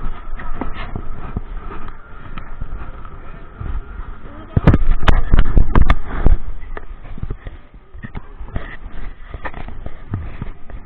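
A snow tube being swung round at the top of an indoor tubing slope, with a burst of loud knocks and rubbing against the camera and tube about halfway through. Background voices run underneath.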